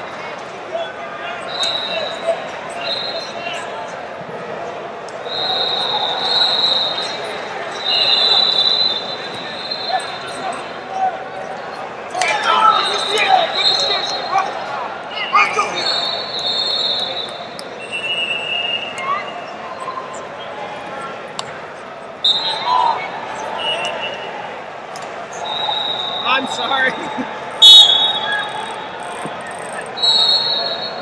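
Busy wrestling-hall din: coaches and spectators talking and calling out, with repeated high squeaks of wrestling shoes on the mats. About two seconds before the end comes one sharp, loud slap.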